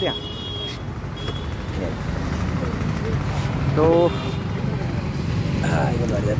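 Steady low rumble of road traffic from a busy street.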